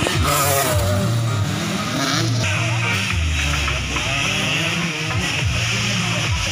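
Small motocross bike engine revving as a young rider passes on a dirt track, mixed with music from a loudspeaker.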